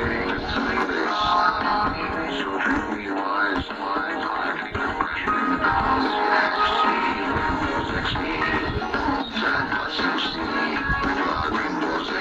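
Music from a cassette tape played through a home-built PWM MOSFET switching (class D) amplifier into an 8-ohm TV speaker. The circuit is being fine-tuned for the clearest sound.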